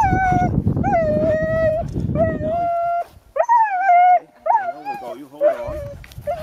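Several harnessed sled huskies howling and whining in a string of long, wavering calls, some overlapping, the way a sled team sounds while it waits to be let go.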